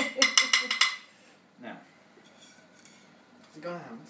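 Laughter for about the first second, then faint clinks and scrapes of a knife on a plate as pudding is served.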